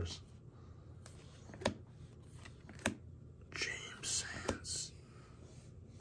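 Chromium trading cards being flicked through by hand: faint handling with two sharp little clicks a second or so apart, then a soft hissing stretch past the middle.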